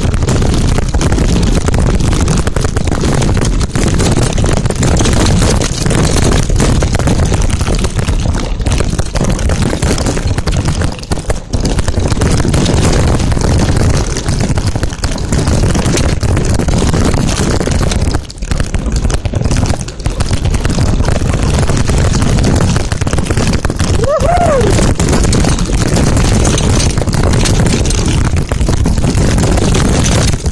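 Wind buffeting the microphone and the rumble and rattle of a mountain bike's knobby tyres over a rough dirt trail at speed, loud and steady throughout. About 24 seconds in there is a brief rising-and-falling squeal.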